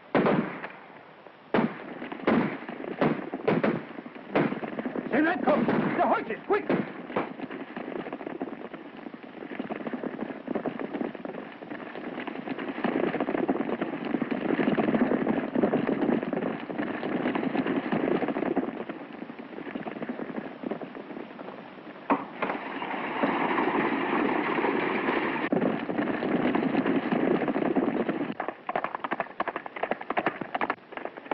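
Gunfire on an early sound-film track: a rapid series of shots over the first several seconds that thins out, then long stretches of loud, indistinct noise with voices, and sharp reports again near the end.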